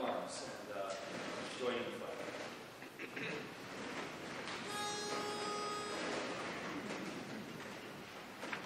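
A pitch pipe sounds one steady reedy note for about a second and a half, about halfway through: the starting pitch given to an a cappella barbershop chorus before it sings. Quiet voices are heard in the hall just before it.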